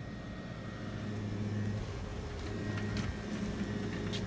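Steady low hum of a store's background machinery, such as ventilation or refrigeration, with a few faint clicks about three seconds in.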